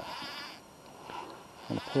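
A sheep bleating: one quavering call in the first half second.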